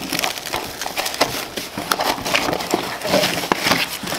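Rustling and small clicks of items being rummaged through inside a fabric duty bag, with the handling of a small cardboard medicine box as it is lifted out.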